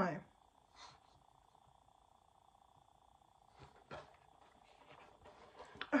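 Quiet room with a faint steady hum and a thin high whine, broken by a few faint brief sounds about a second in and again just before four seconds.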